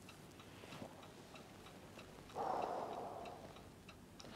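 Faint, even ticking of a clock in a hushed room, with a brief soft rush of noise a little past halfway.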